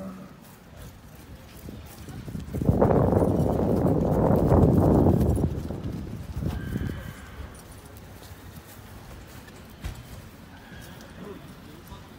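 A horse whinnying, one long call about three seconds in that fades after a couple of seconds.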